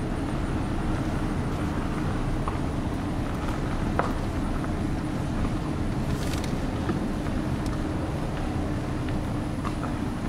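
Car cabin noise while driving slowly: a steady low rumble of the engine and tyres, with a single small click about four seconds in.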